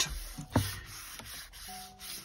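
Hands rubbing and sliding over a sheet of cardstock on a wooden tabletop, a soft papery friction noise.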